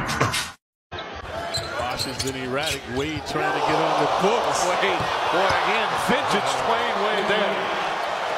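Arena game sound: crowd noise that swells up about three and a half seconds in, with a basketball being dribbled on a hardwood court and voices in the crowd. It opens with a brief cut-off and a moment of silence before the game sound begins.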